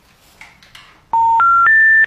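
Telephone special information tone: three steady beeps stepping upward in pitch, about a third of a second each, starting about a second in. It is the network's signal that a call cannot be completed, the tone played before a 'number not in service' or 'subscriber unavailable' recording.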